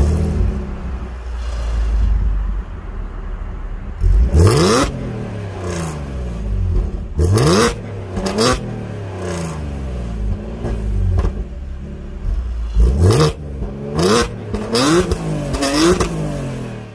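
Supercharged 3.0-litre V6 of a 2015 Audi S5 with a modified exhaust, idling with a low rumble, then free-revved while parked: one rev about four seconds in, two quick blips a few seconds later, and a cluster of four short blips near the end, the pitch dropping back after each.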